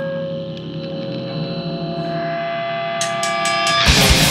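Grindcore demo recording: a held, ringing distorted guitar chord. About three seconds in come a few quick sharp clicks, and just at the end the full band crashes in with fast, heavy drums.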